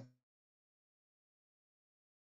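Dead silence, after the tail of a voice cuts off at the very start.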